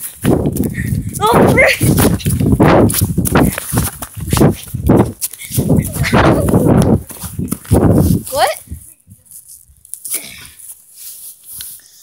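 Loud rustling and knocking of a phone microphone carried by someone running, with a few short vocal sounds. The noise drops away about eight and a half seconds in.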